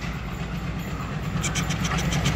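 Diesel locomotive of an approaching passenger train, a low steady engine rumble with a throbbing pulse. A quick run of light clicks starts about one and a half seconds in.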